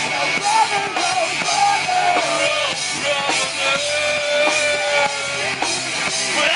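Live Southern rock band playing a song, with a bending lead line that holds one long note in the second half.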